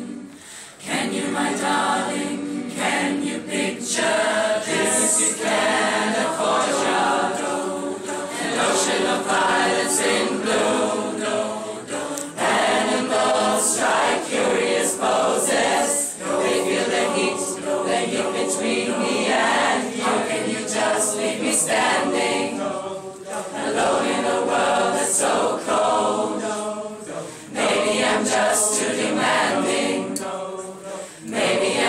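Large mixed choir of men and women singing a pop song in harmony, in phrases broken by short pauses, the first about a second in.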